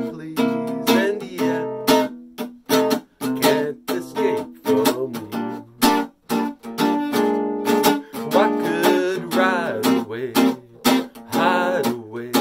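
Steady rhythmic strumming of chords on an acoustic guitar, about two strokes a second, in a swing tune. A man's voice carries a wavering melody over it at times.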